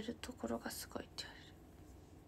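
A young woman's voice speaking softly, close to a whisper, for about the first second, then only quiet room tone.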